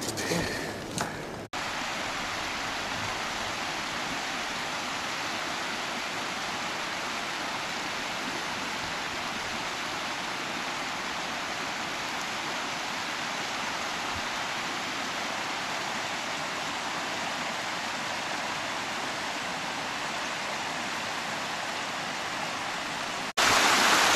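Steady rushing of a mountain stream: an even hiss that holds one level throughout, starting and stopping abruptly about a second and a half in and just before the end. Before it, brief rustling and knocks from a plant stalk being handled.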